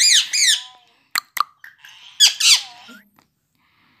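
Indian ringneck parrot giving short, high-pitched squeaky calls: a burst at the start and another about two seconds in, with two sharp clicks between them.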